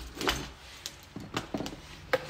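A few light knocks and clicks, spread irregularly over the two seconds, above a low rumble.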